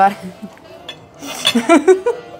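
Knife and fork clinking and scraping on a plate as food is cut.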